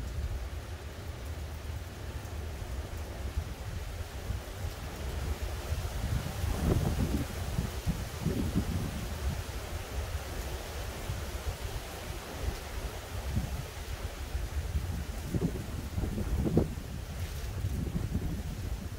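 Gusty wind from Hurricane Ian buffeting the microphone with a steady low rumble, swelling in stronger gusts about six seconds in and again near the end.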